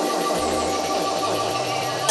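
A live electronic music breakdown: a steady, dense synth texture with a fast, even, buzzing stutter, played without drums.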